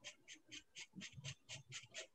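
Faint scratching of a dip pen's metal nib on paper, drawn in quick, even hatching strokes about four or five a second.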